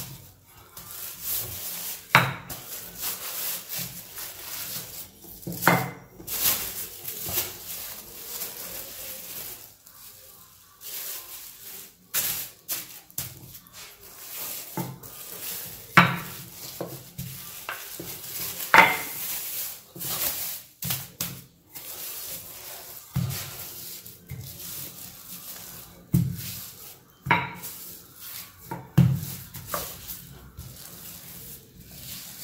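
Clear plastic bag crinkling and rustling as dough inside it is pressed flat by hand and rolled out with a wooden rolling pin on a granite countertop, with several sharp knocks spread through it.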